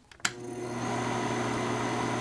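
A switch clicks, then a film projector's motor starts and runs with a steady hum and whirr, building up over about a second and then holding.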